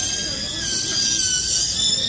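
A lab handpiece with an acrylic trimming bur running with a steady high-pitched whine while it grinds excess acrylic off a lower special tray.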